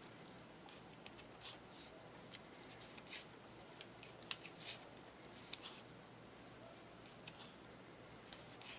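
Faint, irregular clicks and light scrapes of wooden knitting needles working stitches through worsted yarn in a knit-one, purl-one row.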